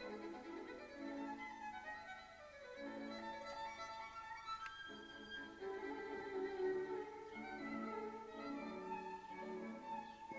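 Background music: a violin playing a slow melody of held notes.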